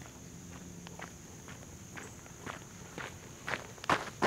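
Footsteps on gravel: a few irregular steps that grow louder near the end.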